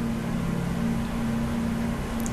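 A steady low hum with a few held low tones over a faint rumble.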